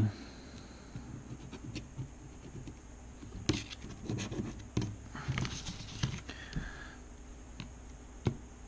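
Red plastic scratcher tool scraping the scratch-off coating of an instant lottery ticket, in several short bouts of scratching strokes with pauses between.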